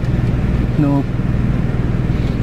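Car engine idling: a steady low hum heard from inside the cabin, under a brief spoken "No" about a second in.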